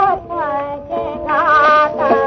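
A woman singing an old Nepali song, with wavering, ornamented held notes over a steady sustained instrumental accompaniment.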